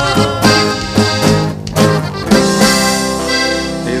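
Live regional Mexican band playing the instrumental close of the song after the last sung line. A short run of notes, a brief break, then a held final chord that slowly dies away.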